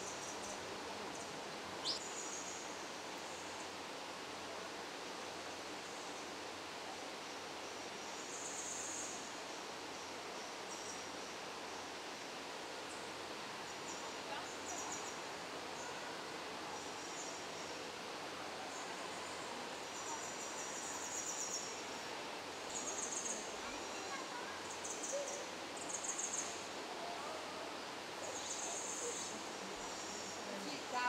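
Rainforest-hall ambience: a steady soft hiss, with short, high, pulsing trills from small animals that come and go every few seconds and grow more frequent in the second half.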